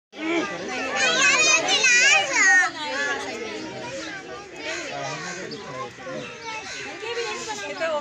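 Children's voices: high-pitched excited squeals and calls, loudest about one to two and a half seconds in, then quieter chatter.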